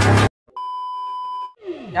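Electronic beep sound effect: one steady high tone lasting about a second, coming in after loud electronic music cuts off abruptly.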